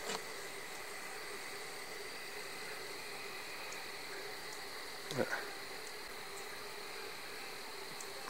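Steady chorus of night insects over a constant hiss. One short sound glides downward in pitch a little after the middle.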